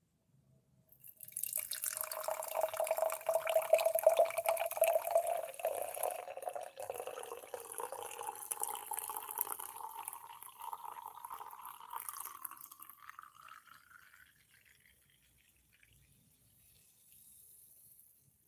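A fizzy orange drink being poured into a stemmed glass, starting about a second in: the pitch of the pour rises steadily as the glass fills. The pour tapers off after about thirteen seconds, leaving faint fizzing.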